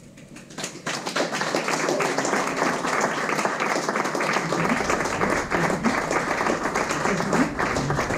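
Audience applauding at the end of a live jazz performance, swelling over the first second and then holding steady.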